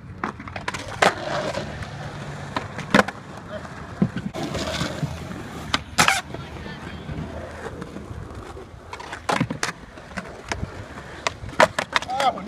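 Skateboards on concrete: wheels rolling, broken by several sharp clacks of boards popping and landing.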